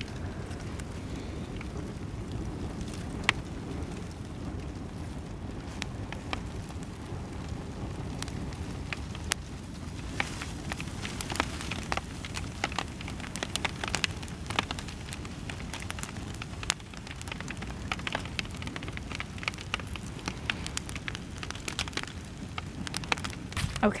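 Cardboard boxes burning in a metal burn bin, the fire crackling with sharp snaps over a steady low rush. The snaps come more often in the second half.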